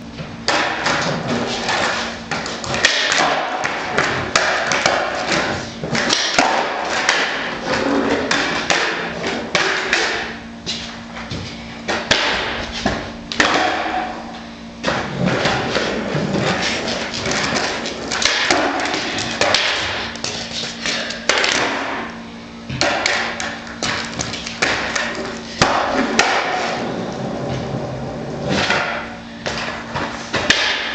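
Skateboard on a concrete garage floor: wheels rolling and the board thudding and clacking down again and again.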